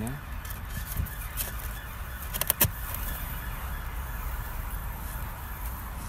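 Beehive lid being put back on the hive: a short clatter of several sharp knocks about two and a half seconds in, over steady background noise.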